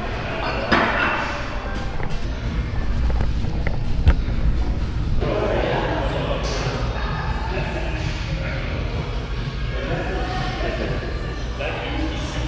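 Gym room sound: background music and indistinct voices, with a single sharp knock about four seconds in.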